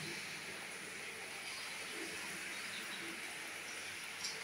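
Light rain falling steadily, an even hiss.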